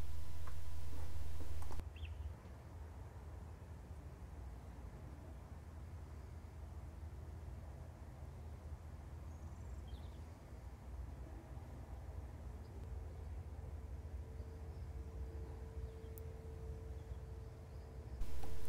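Quiet room tone: a steady low hum, with an even hiss over the first two seconds that cuts off sharply, and a faint steady tone that comes in about two-thirds of the way through.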